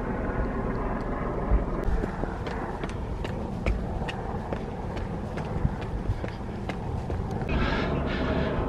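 Footsteps climbing concrete stairs, light clicks about twice a second, over a steady low outdoor rumble.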